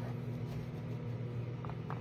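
Steady low electrical hum of a microwave oven running mid-cook.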